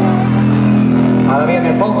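Live band music recorded loud from the audience: a steady held low synth chord, with the singer's voice coming back in a little past halfway.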